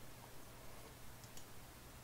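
Very quiet room tone with a low steady hum, and a few faint clicks from a computer mouse's scroll wheel a little past the middle.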